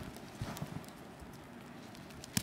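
Soft thuds of a husky puppy's paws landing in deep snow as it bounds, a few in quick succession about half a second in.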